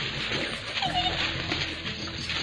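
Javan dholes feeding, one giving a short high-pitched call about a second in, amid scattered small clicks.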